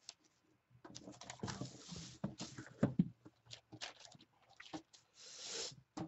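Tabletop handling noise as a cardboard card box and a spiral notebook are moved: irregular light knocks and paper rustles, ending in a brief sliding swish about five seconds in.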